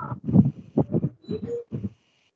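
Short, muffled, indistinct speech over a video call, stopping just before the end, with a faint steady high-pitched tone behind it.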